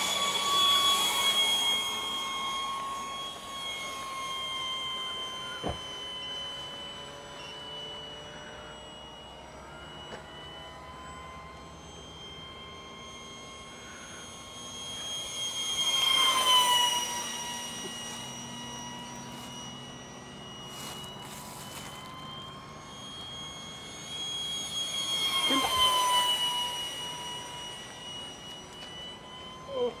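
Radio-controlled model jet flying passes. Its steady high-pitched whine swells and drops in pitch as it goes by, three times: near the start, about halfway through and near the end.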